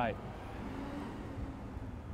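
Faint low rumble of distant street traffic, fairly steady.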